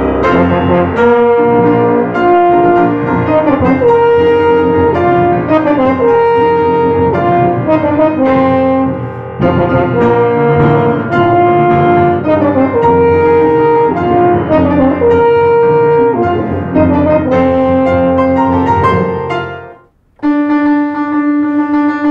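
Piano, French horn and tuba playing a movie theme together, the horn carrying a stepwise melody in long held notes over piano and tuba. Near the end the music fades out and stops briefly, then a new piece begins with a held brass chord.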